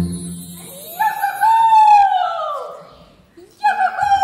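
A rooster crowing twice. Each crow rises, holds a long high note and falls away; the second begins near the end.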